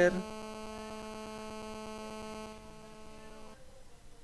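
Steady electrical hum made of several held tones, cutting off about three and a half seconds in and leaving only faint hiss.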